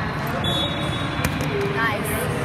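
A volleyball bouncing on the hard court floor between rallies, with the chatter of players and spectators around it.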